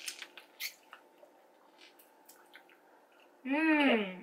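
Soft, scattered clicks and rustles of candy being picked up and handled on a table, a few seconds of small handling noises.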